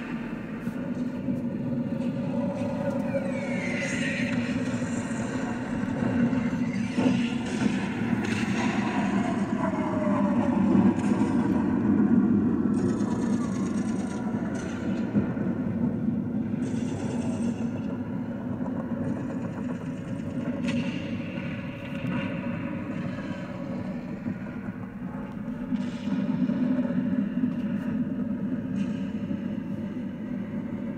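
Battle sound effects: a continuous low rumble with scattered gunfire-like cracks and a few sweeping whines that rise and fall.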